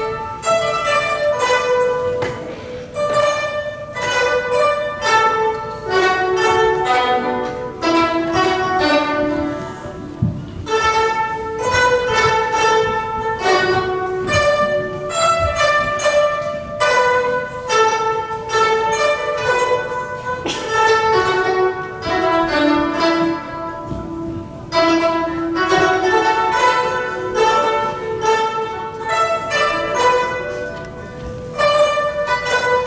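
Ensemble of guzheng (Chinese zithers) playing a melody together: plucked notes that ring and fade, in phrases with short breaks between them.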